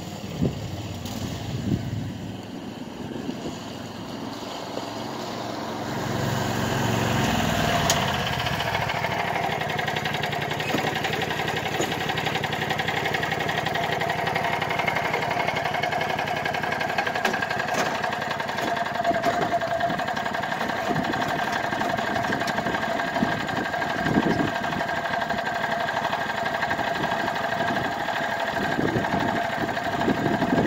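Landmaster LM650 UTV's 653 cc engine idling while parked. It builds up and rises about six seconds in, then runs steadily at a fast idle, which the owner says needs turning down a little.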